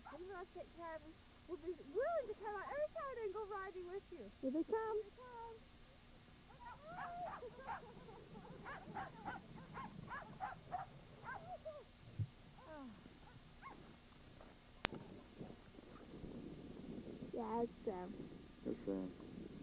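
A team of sled dogs yelping and howling, with rising and falling howls early on and a burst of quick, sharp yelps in the middle.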